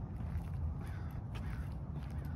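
Footsteps on a concrete sidewalk over a steady low rumble of wind and handling on the microphone. Two short, harsh calls sound around the middle.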